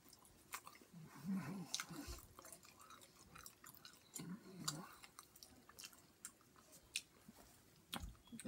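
A person biting and chewing a mouthful of pizza, with wet mouth clicks and smacks scattered through the chewing.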